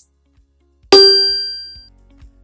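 A single bright metallic ding: one sharp strike about a second in that rings with several clear tones and fades out over most of a second, a logo chime sound effect.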